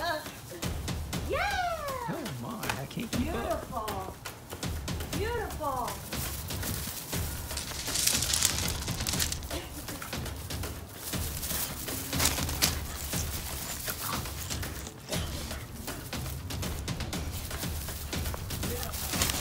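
Basenjis giving several short yodel-like calls that rise and fall in pitch during rough play, clustered in the first six seconds, over background music.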